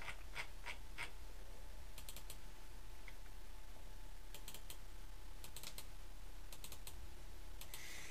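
Computer mouse clicking in small clusters, several clicks coming in quick pairs like double-clicks, over a steady low hum.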